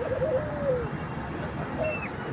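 Soft, low bird calls: a run of short notes over the first second, the last one sliding down in pitch, and one more brief note near the end.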